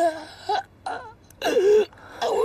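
A man wailing and sobbing as he cries out broken words in four short bursts, the last the longest: the anguish of a man lamenting that he has been crippled.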